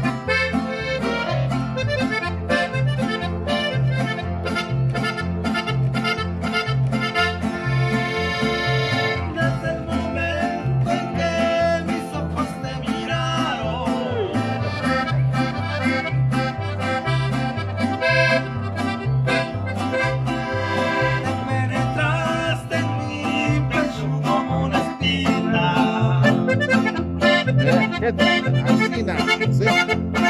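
Mariachi group playing a song led by accordion over strummed guitars, with a guitarrón plucking alternating bass notes in a steady beat.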